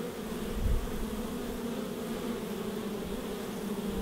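Honey bees buzzing steadily at a hive entrance, a continuous low hum with a higher overtone. A brief low thump less than a second in.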